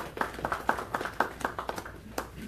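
A few people clapping: a quick run of sharp hand claps, several a second.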